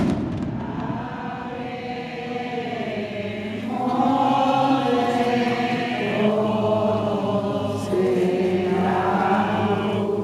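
A crowd of voices singing a religious hymn together in unison, holding long notes, getting louder about four seconds in.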